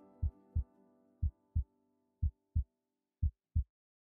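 Heartbeat sound effect: pairs of short, low lub-dub thumps, four pairs about a second apart. The last sustained chords of background music fade out under them over the first two seconds.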